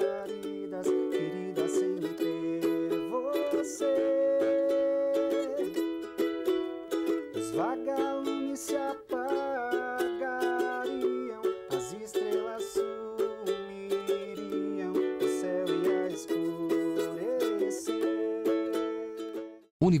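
Ukulele played live, strummed chords carrying a melody; the music fades away just before the end.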